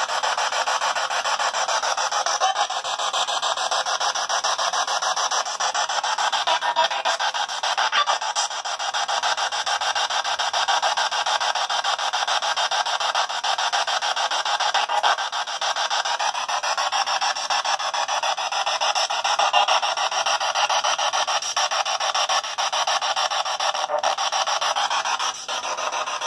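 A handheld P-SB7 spirit box sweeping through radio frequencies: loud, steady hissing static, finely chopped as it scans, with no low end. The uploader marks it as holding faint EVP voices: an unknown female, an unknown male and low whispering.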